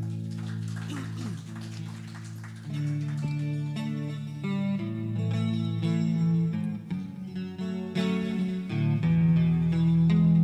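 Small worship band playing an instrumental break with no singing: acoustic and electric guitars sounding held chords, changing roughly every second, with picked notes over them.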